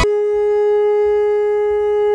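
A conch shell (shankh) blown in one long, steady note.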